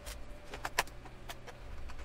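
Plastic bottom access cover of a Lenovo G770 laptop being pressed and snapped into place by hand: a few sharp plastic clicks and taps, the loudest a little under a second in.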